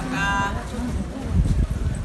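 Busy pedestrian street: one drawn-out voice is heard briefly at the start, then crowd noise and a low rumble that is strongest around the middle.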